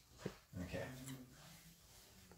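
A faint, low hummed voice held for about a second, just after a soft knock.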